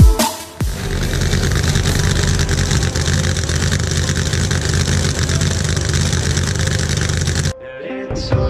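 Supercharged V8 drag-car engine running loud and steady, without revving up or down, for several seconds before it cuts off abruptly near the end.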